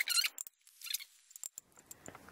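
A hand hole punch biting through the thin metal wall of a cat food can: two short, high crunching squeaks about a second apart, with fainter metallic clicks between them.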